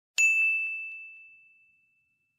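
A bell-ding sound effect of the kind used with a subscribe-bell animation: one bright strike ringing at a single high pitch and fading away over about a second and a half.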